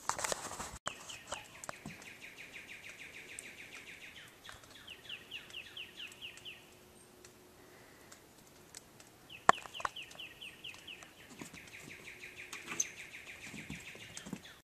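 A songbird singing: runs of rapidly repeated, down-slurred whistled notes, each run lasting a few seconds with short pauses between. A sharp click sounds about nine and a half seconds in.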